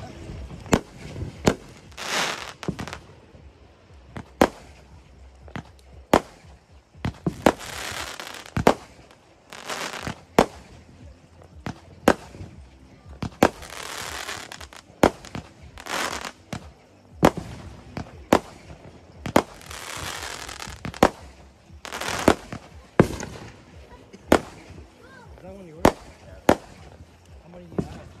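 Fireworks going off: a string of sharp bangs, roughly one a second, some loud and some fainter, with longer noisy stretches of a second or so between them.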